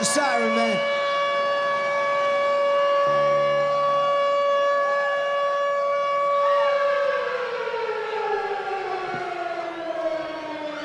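A sustained siren-like wail held on one steady pitch, then sliding slowly down in pitch from about seven seconds in.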